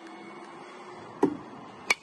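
A small pitching machine hums, then a dull thump a little over a second in as it throws the ball; about two-thirds of a second later a bat strikes the ball with a sharp crack, the loudest sound.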